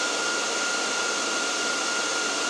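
Dell PowerEdge R740 rack server's cooling fans running: a steady rushing noise with a constant whine on top. The builder finds the noise sort of annoying.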